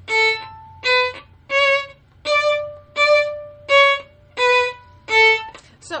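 Violin played staccato: eight short, separate bowed notes about 0.7 s apart, stepping up in pitch and back down. Each note is cut short by a fast bow stroke, and the string rings briefly into the gap before the next.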